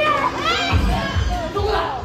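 Several high voices, children's, calling out at once over stage-show music, with a few low thuds about a second in.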